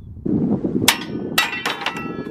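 A hanging steel plate target struck several times in quick succession, the later hits ringing metallically, over a steady low rumble that cuts off suddenly.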